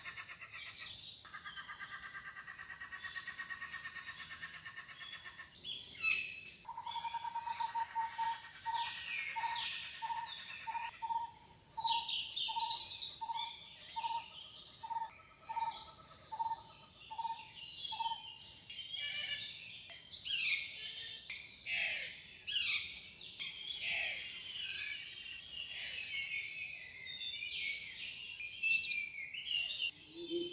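Several birds calling, with many short high-pitched chirps and whistles throughout. For about ten seconds in the middle a lower hooting note repeats about twice a second.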